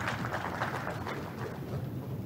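Audience applause: dense, irregular clapping that thins out through the second half, over a steady low hum from the hall.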